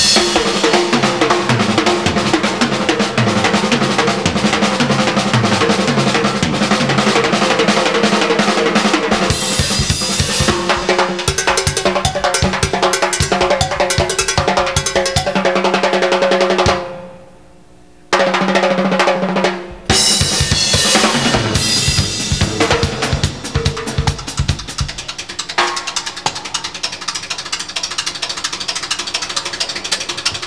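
Tama drum kit played live: a rapid, dense run of bass drum, snare, tom and cymbal strokes that breaks off for about a second just past the middle and then starts again.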